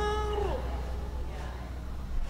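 A man's voice leading the prayer in a chant, holding a long note that slides down and ends about half a second in. A steady low hum stays underneath.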